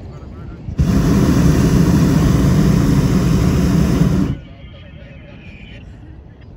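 Hot-air balloon's propane burner firing in one steady blast of about three and a half seconds, starting suddenly about a second in and cutting off sharply.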